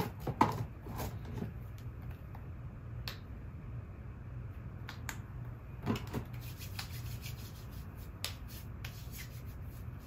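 Soft rubbing and rustling of pajama fabric and hands as a person shifts on a bed, with scattered small clicks and taps, a few sharper ones about a second in and around six seconds, over a steady low hum.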